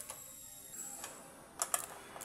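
Hand nut driver tightening the steel nuts on a fuel pump bracket: a few light metallic clicks and ticks, with a quick cluster of clicks near the end.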